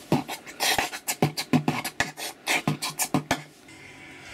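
Beatboxing: quick, irregular mouth clicks and breathy puffs in a loose rhythm. They stop a little past three seconds in.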